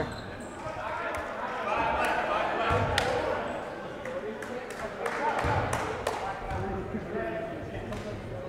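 A few scattered basketball bounces on a hardwood gym floor, heard under the chatter and shouts of the crowd and players echoing in the gymnasium.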